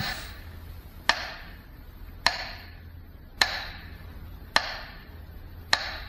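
Metronome beating slowly, about one stroke a second: five sharp clicks, each with a short echo. It marks a minute of silence.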